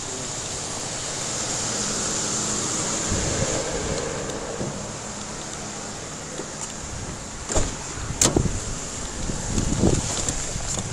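Steady outdoor rumble and wind noise on a moving camera's microphone beside a patrol car, with a faint thin high whine throughout. Three short knocks come in the last few seconds.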